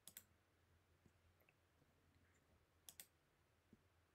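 Faint computer mouse clicks over near silence: a quick double click right at the start and another about three seconds in.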